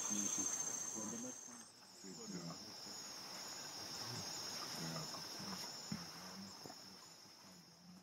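Steady, shrill trilling of forest insects, with a change to a slightly lower pitch about one and a half seconds in. Faint, broken low sounds lie underneath, with one small click near the end.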